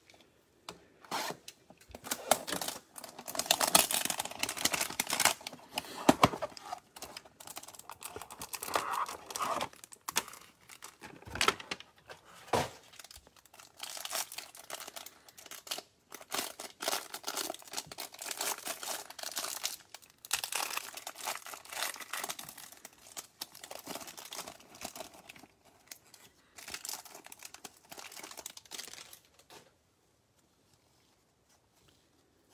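Crinkling and tearing of trading-card packaging: a cardboard hanger box being opened and the clear plastic bag of cards inside pulled open. The rustling comes in irregular bursts and stops just before the end.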